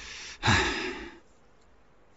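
A person's sigh: two breaths, the second louder and longer, trailing off just after a second in.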